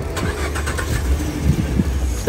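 Sports car engine idling with a steady, deep low rumble.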